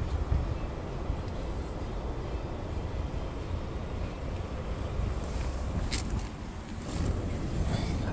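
Hyundai Santa Fe engine idling in park, a steady low rumble heard from inside the cabin, with a few light clicks around six and seven seconds in.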